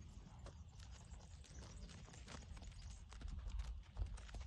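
Goat hooves tapping and scuffing irregularly on dry, stony ground as two goats jostle in play, with faint scattered clicks and knocks. A sharper knock comes right at the end.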